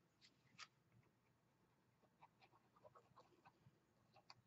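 Near silence, with a few faint light ticks from paper being handled.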